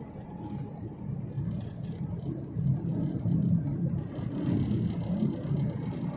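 Low, steady rumble of engine and tyre noise heard from inside a moving road vehicle.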